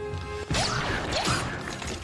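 Film soundtrack: orchestral music with mechanical sound effects that come in suddenly about half a second in, with sweeping rises and falls in pitch over a clattering mechanical noise.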